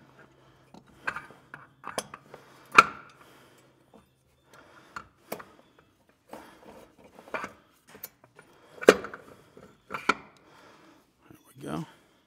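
Metal CVT clutch parts of an ATV clinking and knocking as they are handled and fitted onto the shaft with the drive belt: a string of separate sharp clicks and clunks, the loudest about three seconds in and again near nine seconds.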